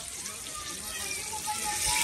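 Chicken pieces frying in a pan of hot oil over a wood fire: a steady sizzle that grows louder toward the end.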